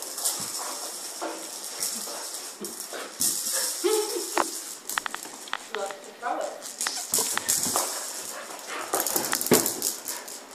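Young kelpie playing with a ball: a run of sharp clicks, knocks and rattles from the ball and claws on the floorboards, with a few short pitched vocal sounds around the middle.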